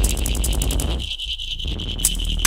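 Experimental electronic noise music: a deep bass drone under fast, gritty high-pitched rattling and a thin steady high tone. The middle of the sound drops out for about half a second just past halfway.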